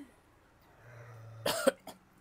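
A single short cough about one and a half seconds in.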